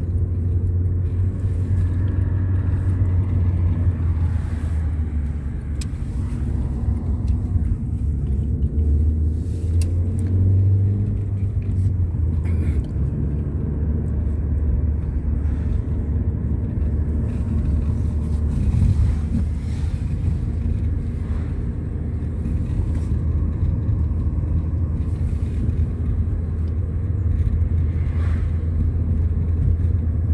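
Steady low rumble of a car driving on the road, engine and tyre noise heard from inside the moving car's cabin.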